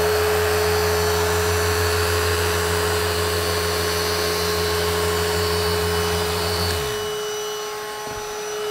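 Festool Rotex sander running on a wood board, with a Milwaukee shop vacuum drawing the sanding dust through the tool's extraction hose. The sander's low hum stops with a falling wind-down about seven seconds in, while the vacuum's steady whine carries on.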